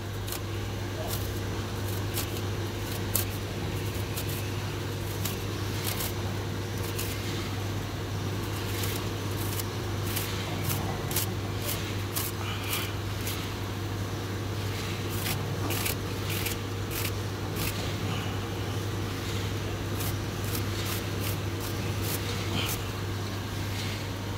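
A fin comb drawn through the bent metal fins of a chiller's condenser coil, giving irregular short scratchy clicks as it straightens the fins, over a steady low hum.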